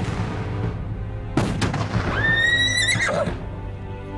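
A single cannon shot about a second and a half in, then a horse whinnying once for about a second, its call rising at the start and ending in a wavering fall. Background music plays throughout.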